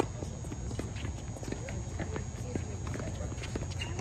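Tennis ball struck by a racket right at the start, a sharp, loud pock, followed by the rally's further ball hits and bounces and players' shoes on the hard court as short scattered knocks.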